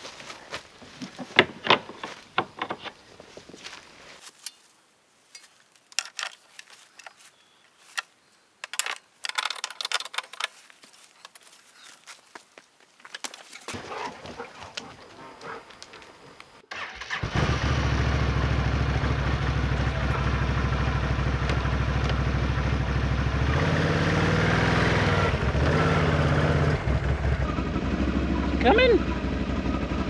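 Scattered knocks and clicks as a portable power station is handled on an ATV's front rack, then a Can-Am ATV engine starts suddenly a little past halfway and runs steadily, its note shifting as it pulls away.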